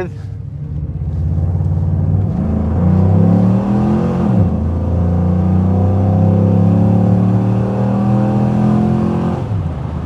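A 6.2-litre LS3 V8 accelerating hard under full throttle. The engine note climbs in pitch, dips once about four seconds in as it shifts up, holds high and loud, then eases off near the end.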